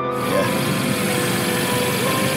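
Steady, loud hiss of air escaping from a leaking car tyre, starting abruptly, under soft piano music.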